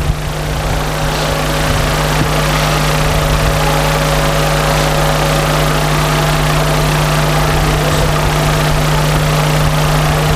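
A steady mechanical hum with a strong low drone, running at an even level throughout.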